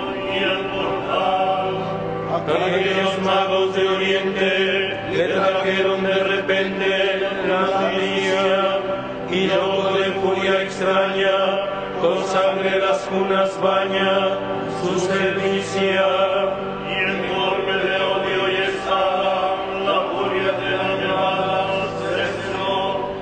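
Liturgical chant: voices singing a slow hymn in long, held notes that move gently in pitch, without a break.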